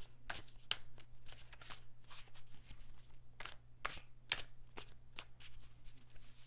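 A deck of tarot cards being shuffled by hand: a quick, irregular run of soft card clicks and slaps as the cards fall against each other.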